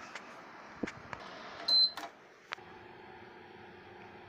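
A few light clicks and knocks of a handheld phone being moved, with one short, loud, high-pitched electronic beep near the middle; after that a steady low hum carries on.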